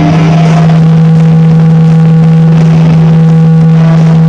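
Amplified electric guitar holding one low note, loud and steady, with no decay and only faint higher overtones.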